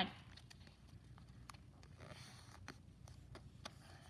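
Faint, scattered soft ticks and rustles of a sheet of paper being folded by hand and its crease pressed down.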